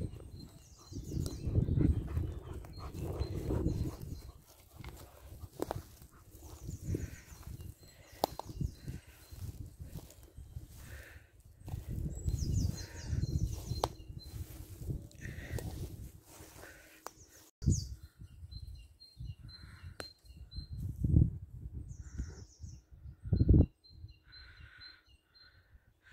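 Woodland birds calling, with short high chirps and call phrases scattered through, over intermittent low rumbling on the microphone and a few sharp clicks.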